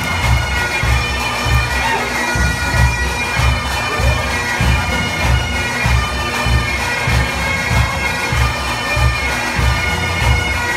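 Bagpipe music accompanying a dance: the steady drone and chanter of bagpipes over an even, quick low drum beat of about three beats a second.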